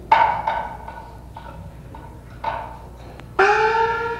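Kunqu opera percussion: a string of sharp wooden clapper and drum strikes, then near the end a louder strike on the small opera gong, its ringing tone gliding upward as it sustains.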